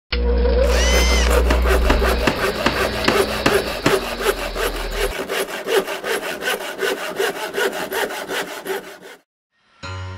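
Rhythmic rasping, scraping sound effect repeating about five times a second, with a steady low hum under it for the first half and a short rising-then-falling whistle about a second in. It cuts off suddenly about nine seconds in.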